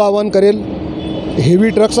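Steady highway traffic, cars and trucks going by, under a man's speech; the traffic is heard alone in a short pause about half a second in.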